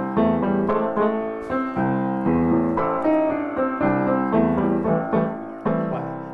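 Grand piano played in an upbeat groove, with repeated chords struck over changing bass notes.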